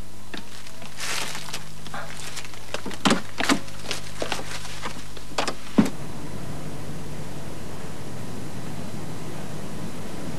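Steady hiss and low hum from an old videotape soundtrack, with a few soft clicks and knocks in the first six seconds.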